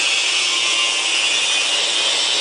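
Glass rotary evaporator apparatus running under vacuum test: a steady, even, hissing whir that does not change.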